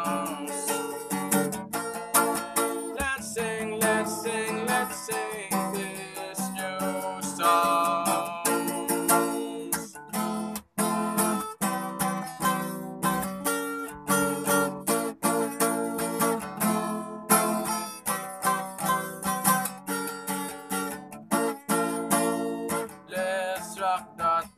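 Acoustic guitar with a capo, strummed in a steady rhythm of chords.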